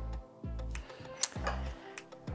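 Soft background music: a few low notes, one every half second to a second, with a single sharp click a little after a second in.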